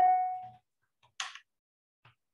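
A single sharp ringing clink that dies away within about half a second, followed about a second later by a short soft swish.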